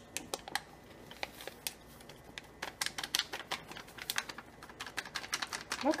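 A plastic spice bag crinkling and being tapped as ground cinnamon is poured from it into a glass mason jar. It makes a run of small, sharp clicks, sparse at first and coming much faster from about halfway through.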